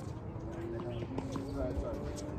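Indistinct distant voices, with a few faint light knocks about a second in and again about half a second later.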